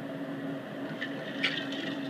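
Steady low machine hum with a faint click or clatter about one and a half seconds in.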